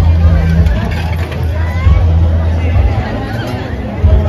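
Crowd hubbub of many people talking at once, over a deep bass from loud music on a sound system.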